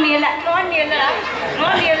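Speech only: performers talking into stage microphones.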